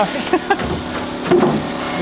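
A man laughing, with a few short knocks, over a steady low hum.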